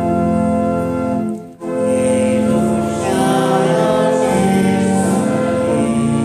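Organ playing a slow hymn in long held chords, with voices singing along. There is a brief pause about one and a half seconds in, before the next line.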